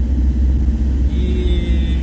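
Steady low rumble of a school van's engine and road noise, heard from inside the cab while driving. About halfway in, a faint high steady whine joins it.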